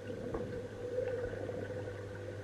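Muffled underwater sound in a swimming pool, picked up by a submerged microphone: a steady low hum with a fainter higher tone and a few soft ticks.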